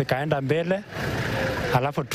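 A man talking, with a pause about a second in that is filled by a steady rush of road noise from a vehicle passing on the highway.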